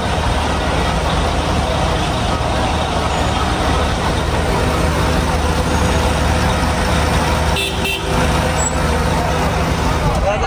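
Steady noise of heavy street traffic close by, with the low hum of a large bus engine running alongside and a murmur of crowd voices.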